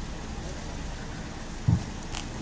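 Steady outdoor street background noise, a low hiss and rumble with no voices, broken by one brief low thump near the end.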